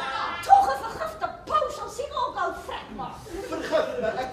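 Stage dialogue between actors, with chuckling laughter.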